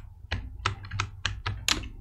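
Computer keyboard keys being pressed in a quick, irregular run of clicks, several a second, over a faint steady low hum.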